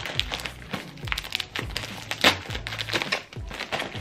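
Crinkling of a gold metallic foil bubble mailer as it is opened and handled, with background music with a low beat underneath.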